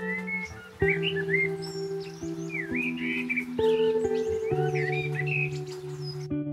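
Soft background music of held instrumental notes, with birds chirping and twittering over it from about a second in, as a morning scene effect.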